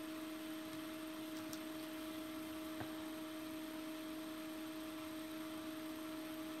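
Quiet room tone: a steady electrical hum with a light hiss, broken by a couple of faint ticks.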